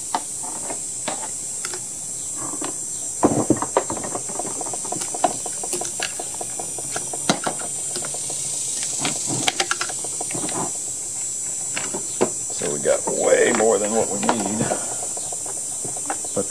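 Scattered clicks and taps of hands handling a plastic chainsaw housing while a fuel line is fed through it, over a steady high insect buzz. A man's voice murmurs briefly a few seconds in and again near the end.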